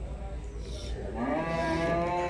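Cattle mooing: one long call that begins about a second in, rises briefly, then holds steady.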